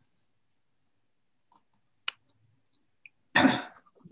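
Near silence, broken by a single sharp click about two seconds in and then a person's short cough near the end.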